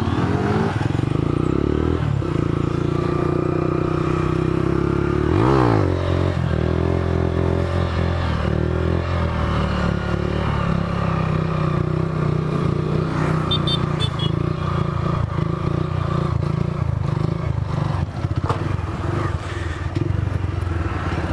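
Small motorcycle engine running steadily while riding. About five and a half seconds in, the engine pitch briefly rises and falls.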